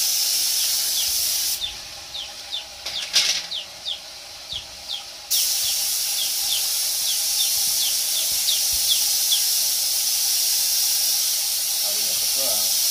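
Gravity-feed air spray gun hissing steadily as it sprays paint. It stops for about four seconds, starting about two seconds in, with a sharp click during the pause, then starts again. A faint short chirp repeats about three times a second throughout.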